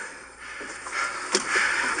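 Scuffling and clothing rustle as officers struggle to push a resisting man into a patrol car's back seat, with one sharp knock a little over a second in.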